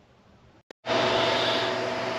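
Faint room tone, broken by a short dropout and a single click under a second in, then a much louder steady hiss with a low hum: the room noise of a small workshop.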